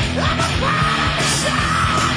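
A heavy metal band playing live. The singer holds one long, high, yelled note starting about half a second in, over guitars and drums.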